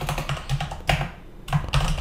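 Typing on a computer keyboard: a quick, irregular run of keystrokes as a terminal command is typed.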